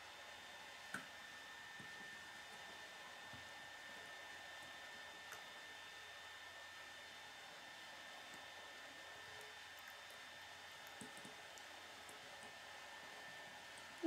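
Near silence: steady faint background hiss with a thin high tone, and a single soft click about a second in, from plastic Lego parts being handled.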